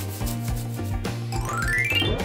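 Light background music with steady low notes, and a rising whistle-like sound effect sweeping up in pitch in the second half.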